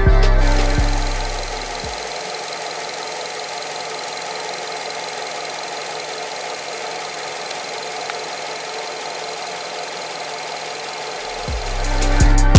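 Background music for about the first two seconds, then a 2018 Nissan X-Trail's four-cylinder engine idling steadily with the hood open. Music comes back in near the end.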